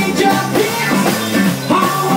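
A small jazz band playing live, with a stage piano, a bass line stepping from note to note and a drum kit.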